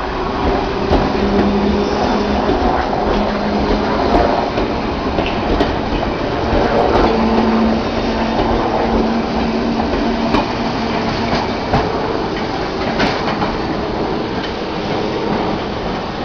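London Underground C Stock District Line train pulling away and running past at close range: a steady loud rumble of the cars with a low hum, and scattered clicks and clatter of the wheels over the rail joints.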